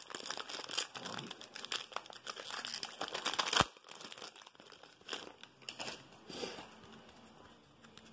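Plastic wrapper of a Donruss baseball card pack crinkling as it is handled and torn open. The loudest tear comes about three and a half seconds in. After it, fainter rustling of the wrapper and cards.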